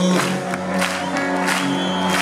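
Live band playing between sung lines: held chords over a steady beat of about three strokes a second.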